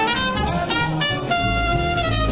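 Live jazz: a trumpet plays a melodic phrase that ends on a long held note in the second half, over upright bass and piano.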